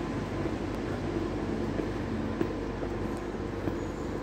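Steady low rumble of city traffic, with a few soft taps of footsteps on concrete steps.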